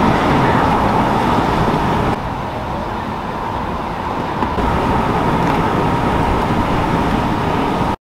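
Steady outdoor vehicle noise, a continuous rumble and hiss, dropping a little about two seconds in and rising again about halfway through.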